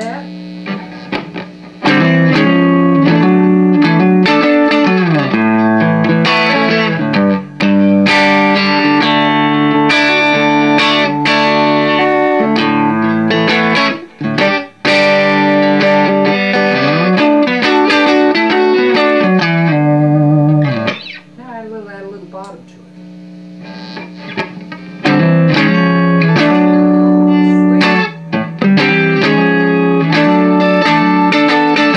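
Strat-style electric guitar played through a Gemtone ON-X8 8-watt EL84 tube amp on its clean setting, into a speaker cabinet with a Celestion G12H. Ringing chords and single notes with sliding bends, with a quieter passage of wavering, vibrato-like notes a little past the middle.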